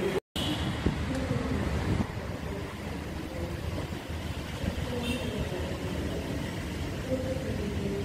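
Steady low rumble of road traffic and car engines, with faint distant voices now and then. A brief dropout comes just after the start.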